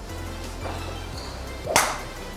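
A golf driver swung and striking the ball: one short, sharp whoosh-and-crack near the end, over background music.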